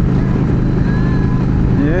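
Yamaha V Star 1300's V-twin engine running steadily at highway cruising speed, with wind and road noise.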